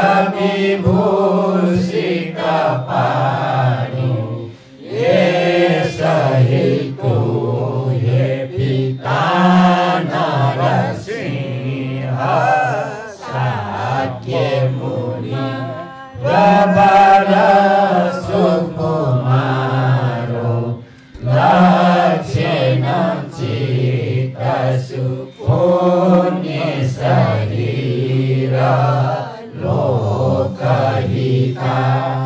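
A group of voices chanting a Buddhist text in unison, reading it from books, in long phrases with brief pauses between them.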